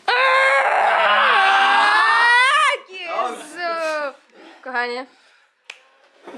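A person's long, loud yell lasting nearly three seconds, its pitch dipping and then rising at the end, followed by shorter shouts, at the climax of an arm-wrestling bout.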